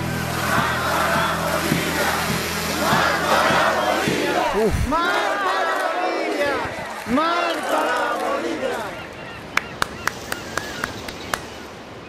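A crowd of voices shouting and crying out together, the protest cry near the close of an Andean folk song, over a low held musical drone that drops out about halfway. The shouts thin out, and a few sharp clicks follow near the end.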